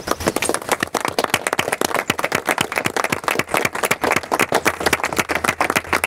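A small group of people applauding: many separate, irregular hand claps, steady throughout.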